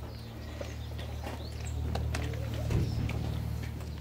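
Birds calling in short chirps over a steady low hum, with a single knock a little under three seconds in.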